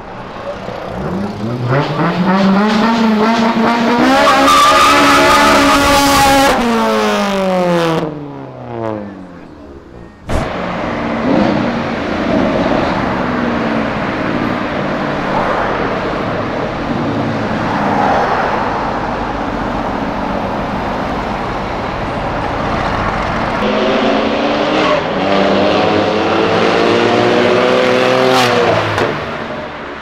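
Sports car engines revving as cars drive past, each rising then falling in pitch as it goes by: one in the first eight seconds, another near the end, with street traffic noise between.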